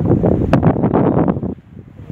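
Wind buffeting the microphone: a loud, low rumble that drops away suddenly about one and a half seconds in. A single sharp click comes about half a second in.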